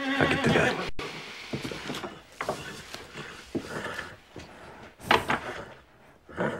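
A sick horse whinnies at the start, followed by irregular short snorts and shuffling sounds, the loudest about five seconds in. The mare is ill, her breathing rough, and she is getting worse.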